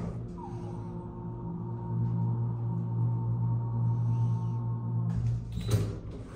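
KONE hydraulic elevator running up, a steady low hum with a thin high whine over it, which cuts off about five seconds in as the car stops at the floor. A short clatter follows just before the end.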